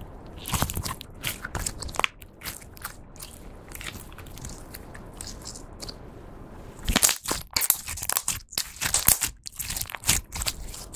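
Hands working a glossy pink slime made of clear slime coloured with lipstick and pearl makeup, making sharp sticky clicks and pops. A few clicks come in the first two seconds, then it goes quieter. In the last three seconds, as the slime is squeezed into a ball, there is dense, loud popping.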